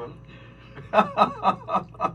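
A man laughing: a short run of about five quick chuckles starting about a second in.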